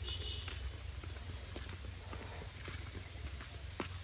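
Footsteps on a dirt path, knocking about once a second, over a steady low wind rumble on the microphone. A brief high tone sounds at the very start.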